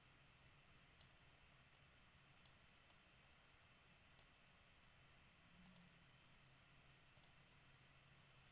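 Near silence: room tone with a faint low hum and about eight faint, scattered computer mouse clicks.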